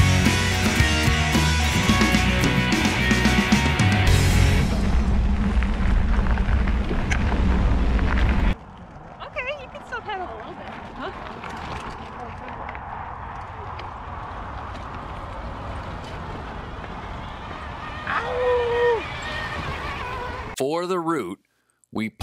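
Upbeat music with a heavy bass beat, cutting off abruptly about eight seconds in. It gives way to much quieter outdoor noise, with a short wavering high cry near the end.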